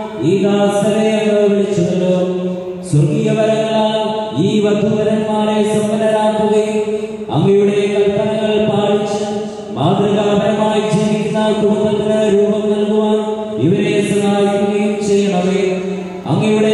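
A male priest chanting liturgical prayer through a microphone, in long held notes on a few steady pitches. Each phrase opens with an upward slide into the note.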